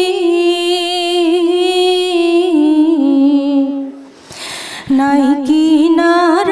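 A woman singing unaccompanied, holding long notes with vibrato that step down in pitch. She breaks off for a breath about four seconds in, then sings on.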